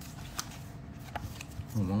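A pause in a man's talk with low background noise and two short faint clicks, then his voice starts again near the end.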